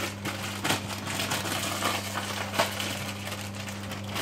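Food being handled and prepared by hand at a kitchen counter: irregular small clicks, crackles and rustles, over a steady low hum.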